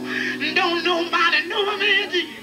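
Live gospel song: a man singing with a wavering vibrato over a steady, held instrumental accompaniment.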